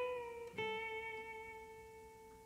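Fender Telecaster electric guitar finishing a single-note lead line: one note rings, is picked again at the same pitch about half a second in, and slowly fades away.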